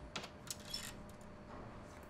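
Faint metallic clicks from a door's lever handle and latch as the door is opened, a few small clicks within the first second.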